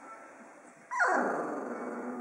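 A Magyar vizsla vocalising: about a second in, a sudden cry drops quickly in pitch into a rough, drawn-out growly sound.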